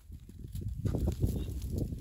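Fingers scraping and prying at dry, crumbly dirt to lift a trapdoor spider's burrow lid: irregular low scuffs and thumps that grow busier about half a second in.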